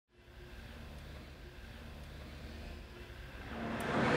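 Faint, steady low rumble of outdoor background noise, fading up and getting louder near the end.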